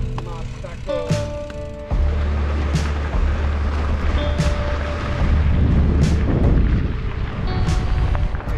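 Wind buffeting the microphone while cycling: a heavy low rumble that sets in about two seconds in and runs on, with a few sharp clicks and steady musical tones over it.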